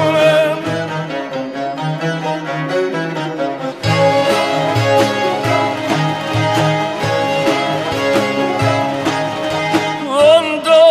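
Persian classical music: an instrumental passage between sung phrases, a bowed string instrument playing with plucked long-necked lutes. The ensemble fills out with lower notes about four seconds in.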